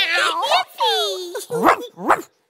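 Cartoon dog character's voice giving a few short barks, one of them drawn out and falling in pitch about a second in.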